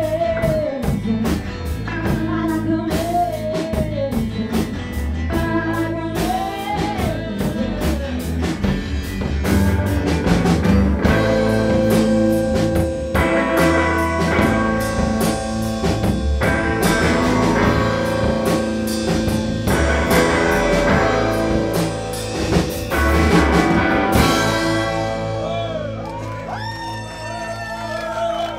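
Live rock band, two electric guitars, bass and drums, playing the song's loud instrumental outro with steady drum hits. About four seconds before the end the drums stop and the guitars let a final chord ring, with bending, wavering notes as it fades.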